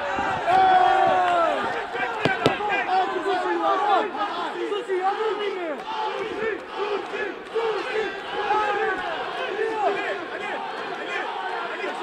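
Fight crowd shouting and yelling encouragement, many voices overlapping, with 'allez' shouted; loudest in the first two seconds. A single sharp crack about two and a half seconds in.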